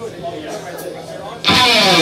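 Voices in the room, then about one and a half seconds in a rock band comes in suddenly and loudly with distorted electric guitar, a note sliding downward at the start of the riff.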